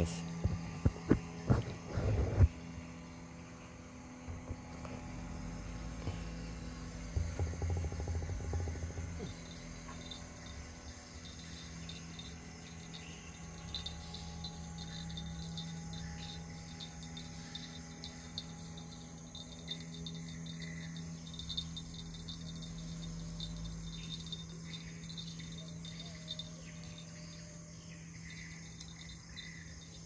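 Insects chirping steadily in the background over a low, steady hum, with a few sharp knocks in the first couple of seconds.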